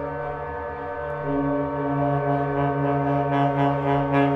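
Saxophone with electronics in a contemporary piece, holding long steady low tones. A second, higher tone enters about a second in and the sound grows louder.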